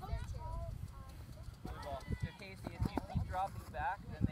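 Indistinct distant voices calling out across an outdoor soccer field, with several dull low thumps in the second half and a steady low rumble underneath.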